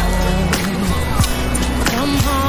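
Recorded pop ballad: a woman's lead vocal sings a drawn-out line over a slow beat with regular drum hits and a steady bass line.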